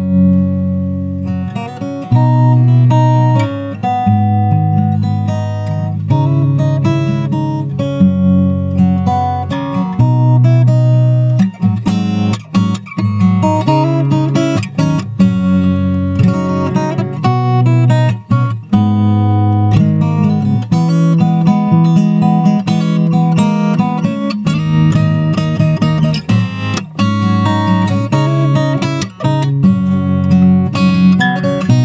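Solo acoustic guitar played fingerstyle, with bass notes and melody picked together and the low bass note changing every second or two.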